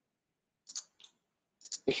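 Two faint computer mouse clicks, about a third of a second apart, then a man's voice starts near the end.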